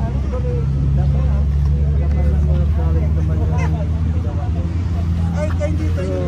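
An engine running with a steady low drone, under faint voices.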